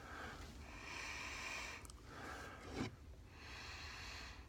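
A man sniffing the aroma of a freshly opened can of beer held at his nose: a few quiet, drawn-out breaths in and out through the nose.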